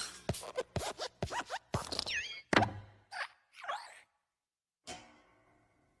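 Cartoon sound effects for a hopping animated desk lamp: a quick run of springy thumps and plops with squeaky gliding creaks, then one last thump about five seconds in.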